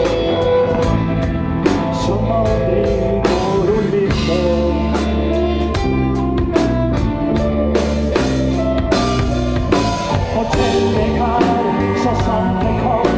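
Live band music: a fiddle plays a melody over electric guitar, keyboard and a steady drum beat.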